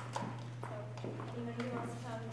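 Indistinct voices talking, with several sharp taps of hard-soled footsteps on a hard floor, over a steady electrical hum.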